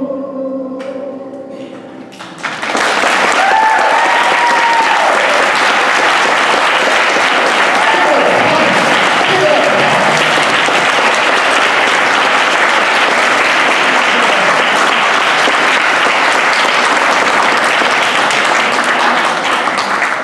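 The last held note of a song dies away, and about two and a half seconds in an audience breaks into loud, sustained applause with a few voices cheering.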